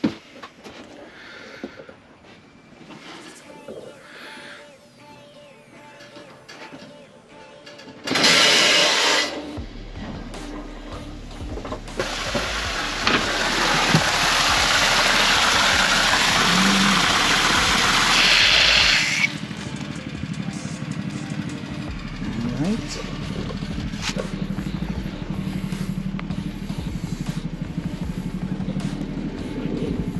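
Water gushing under pressure from an open outdoor pipe valve and splashing onto stone, a loud steady rush lasting several seconds that cuts off suddenly.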